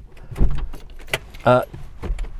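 Car door being unlatched and pushed open from inside: a sharp click and thud about half a second in, then a few lighter clicks.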